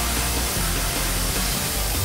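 Oxy-fuel cutting torch on a track carriage hissing steadily as it cuts through steel plate, with background music under it.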